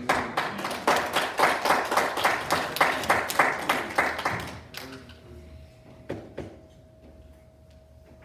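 Congregation applauding for about four and a half seconds, the clapping then dying away. A faint steady tone follows, with two sharp knocks about six seconds in.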